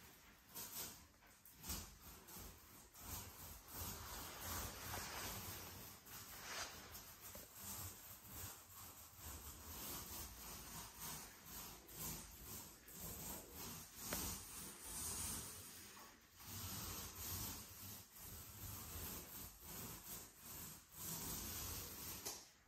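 Paint roller rolling paint onto a wall in repeated up-and-down strokes: a faint, soft rubbing hiss that swells and fades with each stroke.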